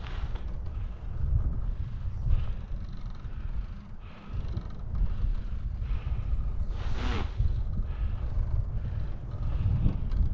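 Wind buffeting the microphone of a camera on a moving bicycle: a low, gusting rumble that rises and falls. About seven seconds in, a brief higher-pitched sound cuts through.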